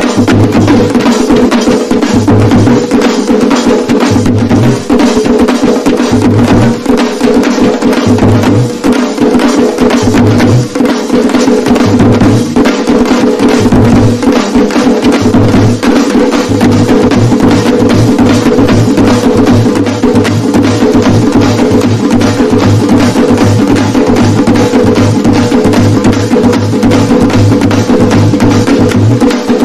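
Loud performance music with fast, dense percussion over a steady held drone, and a deep bass beat that comes in spaced bursts at first and settles into a regular pulse about halfway through.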